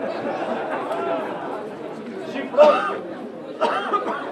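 Several people's voices talking over one another at a football ground, with two louder shouted calls, one past the middle and one near the end.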